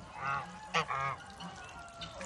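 White domestic geese honking: three short, fairly soft honks within about the first second.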